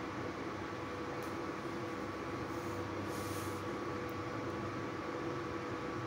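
Puris deep-frying in hot oil in a kadhai: a steady sizzle with a thin, even hum from an induction cooktop beneath it.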